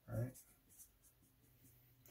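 Faint short strokes of a red Sharpie felt-tip marker drawing small dashes on paper, after a single spoken word.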